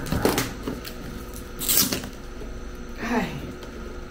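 Hands working at the lid of a cardboard gift box to pry it open: a few light knocks and scrapes, then a short, high rasp a little under two seconds in. A brief vocal sound about three seconds in.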